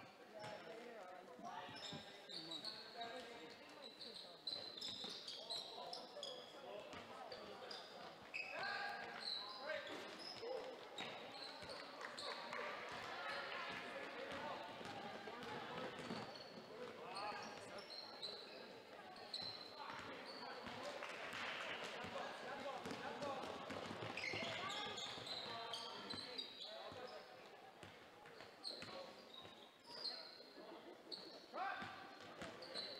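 Basketball game sound in a gymnasium: a basketball bouncing on the hardwood floor amid crowd chatter, with sneakers squeaking on the court.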